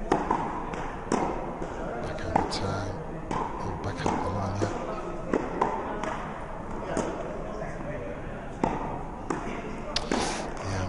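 A tennis ball struck by rackets and bouncing on an indoor court during a rally: a string of sharp pops, roughly one a second, echoing in the hall.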